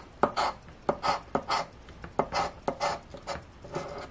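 A coin-shaped scratcher token rubbing the scratch-off coating off a paper lottery ticket in quick, short strokes, about four a second.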